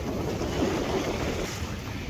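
A steady rush of wind and sea aboard a Hawk 20 sailing dinghy beating to windward through a swell: water washing along the hull, with wind buffeting the microphone.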